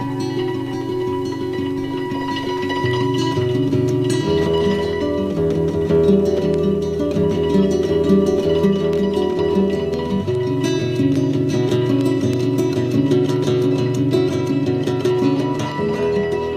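Acoustic folk instrumental of plucked strings, a steady run of picked acoustic guitar notes over a repeating bass line.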